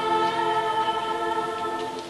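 Children's and young women's choir holding the last chord of the piece, a steady sustained chord that fades away, its lower notes dropping out near the end.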